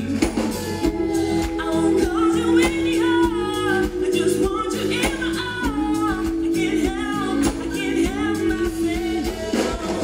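Live pop music: a woman singing lead into a microphone over a band with a steady drum beat, the melody bending over long held notes.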